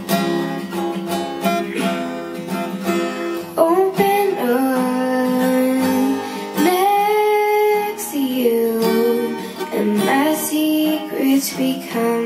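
Acoustic guitar strummed steadily, with a young girl's voice singing long held notes over it from about four seconds in.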